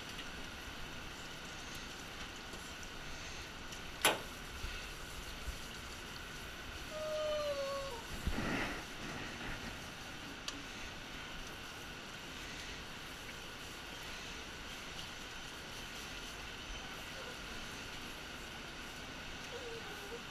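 Steady hiss of a hand-held bath sprayer running as a small dog is rinsed in a grooming tub. A sharp knock about four seconds in, and a short whine from the dog halfway through that bends down in pitch at its end.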